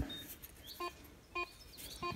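Short electronic beeps from a metal detector, two about half a second apart and a third just at the end, over a quiet background.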